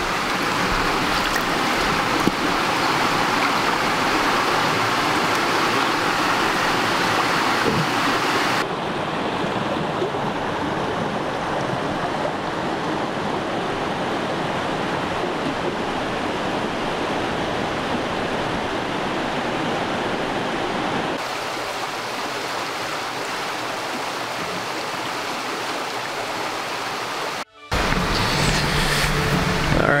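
Small mountain stream running over a rocky bed close by, a steady rush of water. The rush changes in tone abruptly twice and cuts out for a moment near the end.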